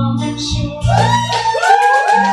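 Women singing together, one through a microphone, with music underneath; long held sung notes begin about a second in.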